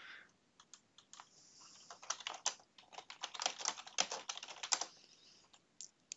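Computer keyboard typing: a run of quiet, irregular key clicks.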